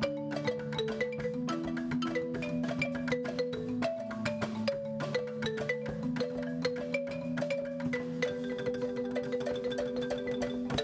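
A marimba played by several players at once: a fast, unbroken run of mallet notes over held low notes, with percussion alongside.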